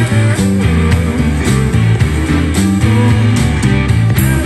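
Live rock band playing: electric guitar over a bass line and drums keeping a steady beat.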